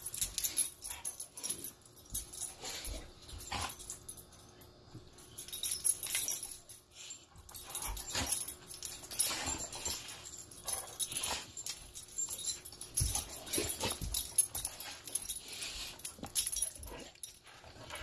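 A cane corso and a puppy play-fighting: irregular dog vocal noises and mouthing, with scuffling as they wrestle.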